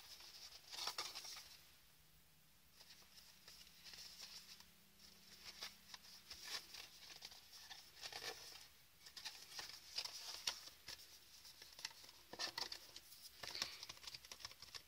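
Faint, irregular rustling and tapping of cardstock being handled, folded and pressed together by hand as the glued tabs of a paper box are pushed into place.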